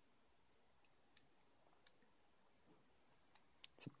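A few short, sharp clicks on a laptop, stepping through photos in a picture viewer, over near silence: one about a second in, another near two seconds, and a quick run of three near the end.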